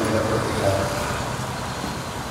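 Steady road traffic noise, with a man's voice over a microphone trailing off in the first second.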